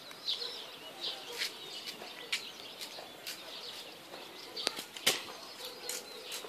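Birds chirping on and off, with several sharp clicks scattered through, the loudest a little after five seconds in.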